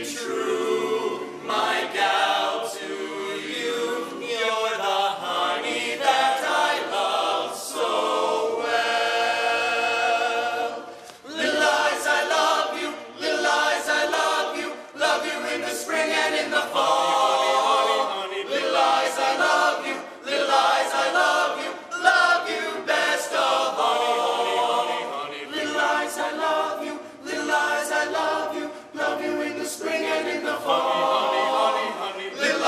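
A barbershop chorus of young men singing unaccompanied in close harmony, with a brief break about eleven seconds in.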